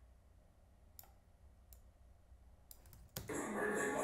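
A few separate, sharp computer clicks against a quiet background, about one a second. Just after three seconds in, the clip's playback audio of music with a voice comes back in.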